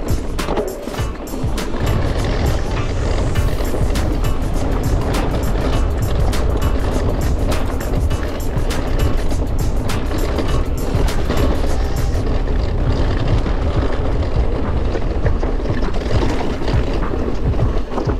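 Mountain bike descending a rocky trail: tyres rolling over stone, with the bike rattling in rapid clicks and wind rumbling on the microphone. Music plays along.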